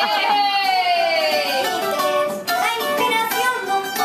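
Live acoustic guitar music with a voice singing a long note that slides downward in pitch.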